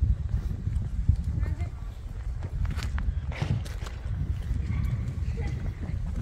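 Footsteps walking on stone paving, an irregular run of steps over a low rumble.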